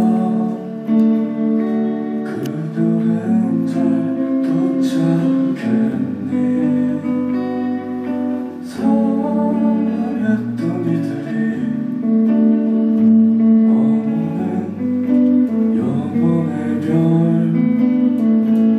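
Live band music: a red Gibson electric guitar playing chords over bass and drums, with a man singing into the microphone.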